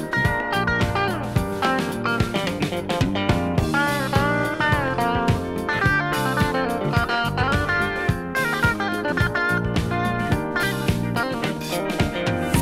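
Guitar-led instrumental break of a 1976 Japanese pop song, played from a vinyl LP, with no singing.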